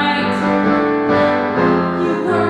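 Live piano accompaniment with a woman singing sustained notes.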